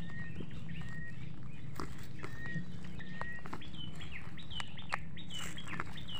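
Birds calling repeatedly: short, even notes in the first half, then a quicker run of high, downward-sliding chirps, over a steady low hum.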